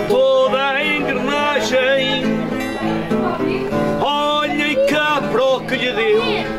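Live acoustic folk music: two acoustic guitars and a small plucked string instrument play a lively tune, with the end of a sung line, "engrenagem", at the start.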